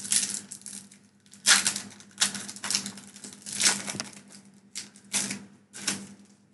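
Foil Pokémon booster pack being torn open and crinkled by hand, heard as a series of short rustling bursts, the loudest about a second and a half in.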